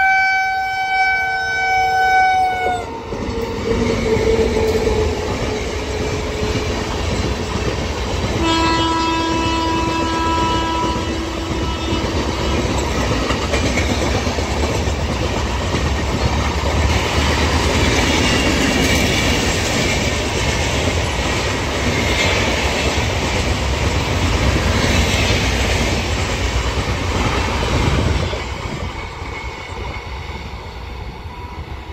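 Indian Railways electric locomotive sounding its horn twice, a higher-pitched blast of about three seconds, then a lower one some eight seconds later. Long rake of passenger coaches rumbling and clattering past on the rails, dropping off sharply near the end as the train moves away.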